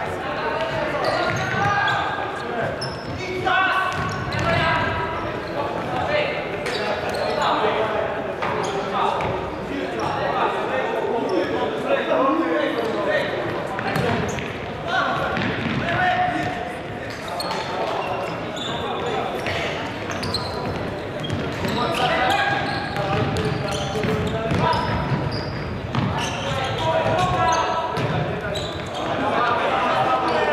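Futsal game sound in a large sports hall: players' voices calling out, with the sharp thuds of the ball being kicked and bouncing on the wooden floor, all echoing.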